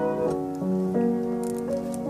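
Battered old grand piano that has been left outdoors for months, played softly and slowly. It plays a gentle lullaby melody of held notes, with a new note or chord every half second or so.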